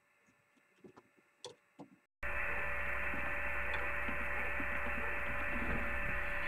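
A few faint clicks of a screwdriver working dash-bezel screws. About two seconds in, a steady electrical mains hum with hiss starts abruptly and carries on.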